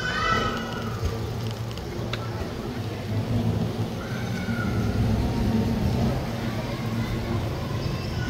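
Outdoor street sound with a steady low rumble of wind buffeting the microphone. Distant voices call out right at the start and again about four seconds in.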